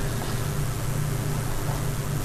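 Steady background hiss with a constant low hum, the recording's noise floor in a pause between narration.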